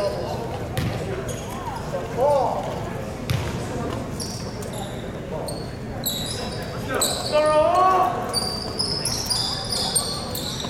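Echoing gymnasium sounds at a volleyball match: sneakers squeak on the hardwood floor, with the squeaks thickest in the second half, and a ball thuds now and then. Players shout calls twice, loudest near the middle and again later on.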